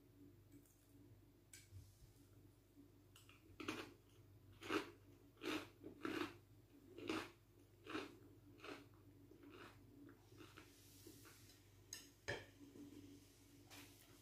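Close-up crunching of a kamut cracker being bitten and chewed, faint short crunches about one a second for several seconds, starting about four seconds in.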